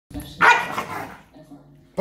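A dog barks once, loud and sharp, while two dogs play tug-of-war with a plush toy.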